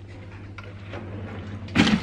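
A kitchen pantry cupboard is being opened by hand: a light click about half a second in and a short noisy burst near the end, over a faint steady hum.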